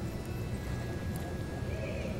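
Cutting horse moving in soft arena dirt as it works a cow, over a steady low arena hum; a short rising-and-falling call near the end.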